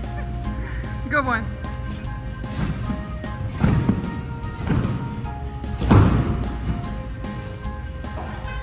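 Background music, with three thuds of a gymnast bouncing and landing on a tumble-track trampoline, the loudest about six seconds in.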